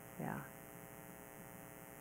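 Steady electrical mains hum with a ladder of overtones, low in level, under a single short spoken word near the start.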